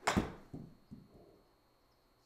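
A golf wedge strikes a ball off a simulator hitting mat with one sharp crack. A few softer thuds follow over the next second.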